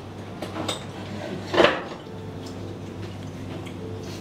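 A wooden spoon clinking and scraping against a ceramic cup of steamed egg: a few light clicks, then one louder scrape about one and a half seconds in, over a steady low hum.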